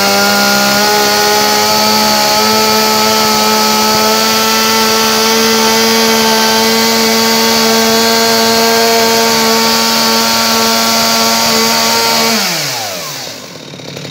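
Stihl MS 250 two-stroke chainsaw engine running loud and steady just after being started, its pitch stepping up slightly a couple of seconds in. About twelve seconds in the engine stops and runs down, its pitch falling away.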